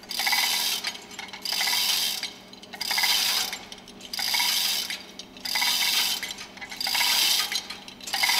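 Hand chain of a chain hoist being pulled in repeated strokes, the steel links rattling and clinking through the hoist about once every second and a quarter, six or seven strokes in all. The hoist is lifting the fuel pump top cover and barrel with the plunger out of the pump housing.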